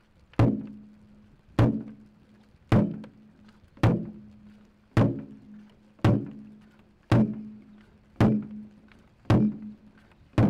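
A deep drum beaten slowly and steadily, about one beat every second, nine beats in all, each ringing out with a low hum as it fades.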